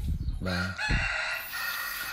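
A rooster crowing: one long call starting about half a second in and lasting about a second and a half.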